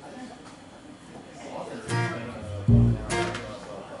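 An acoustic guitar strummed a couple of times together with deep plucked upright bass notes, loose isolated strokes rather than a steady song; the loudest is a bass note with a guitar strum just under three seconds in.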